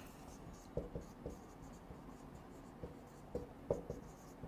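Marker pen writing on a whiteboard: a few faint, short, scattered strokes.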